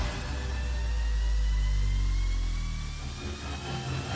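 A deep rumbling sound effect, likely edited in. It starts with a click, and its low tones slide steadily downward while a thin high whine rises. It swells to its loudest in the middle and eases off near the end.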